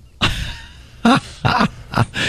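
Men's short laughs and groans in three separate bursts.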